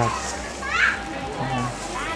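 Background voices of people around a busy street-food stall, with a brief high call, like a child's voice, a little before halfway through.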